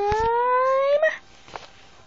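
A single long, high vocal note held for about a second and a half, gliding slowly upward in pitch before cutting off. A few sharp knocks from the phone being handled come near the start.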